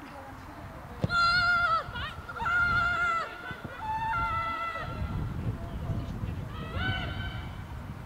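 Women shouting and cheering on a break down the field, in several long, high-pitched drawn-out cries, with a low rumble underneath.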